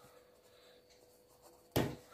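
Marker pen writing on paper: faint scratching strokes, then a short, louder rush of noise near the end.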